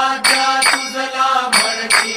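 A devotional aarti hymn sung with accompaniment. Over it a bell keeps ringing, and sharp metallic strikes keep a steady beat, about two to three a second.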